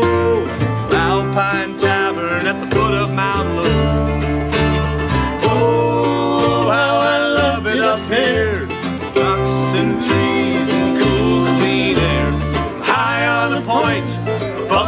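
Bluegrass band playing: mandolin and acoustic guitar plucking over an upright bass that steps from note to note.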